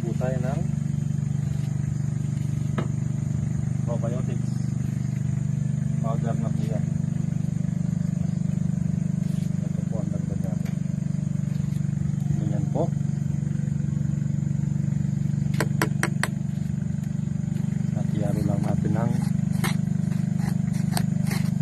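A steady low machine hum, with a few quick clicks and scrapes near the end from a plastic scoop working in dry feed in a plastic bucket.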